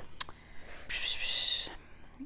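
A woman whispering under her breath for about a second while she searches her notes, just after a short click.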